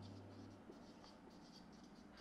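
Faint marker strokes on a whiteboard: a run of short, light scratches while words are being written.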